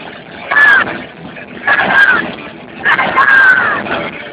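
Thrash metal band playing live, recorded through a phone microphone: dense distorted guitar and drums with loud surges about once a second and high sliding notes riding on top.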